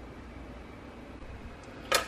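Steady low room hiss and hum with no distinct event, broken just before the end by one brief sharp click.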